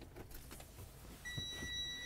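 Faint clicks and shuffling, then a little over a second in a steady high pitched electronic warning tone starts and holds without a break.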